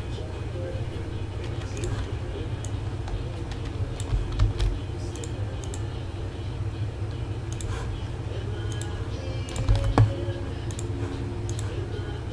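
Computer keyboard and mouse clicks, scattered and irregular, over a low steady hum.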